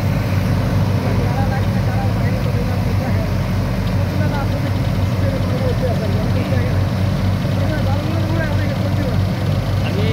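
Dredging machine's diesel engine and water pump running steadily, a deep even hum that does not change.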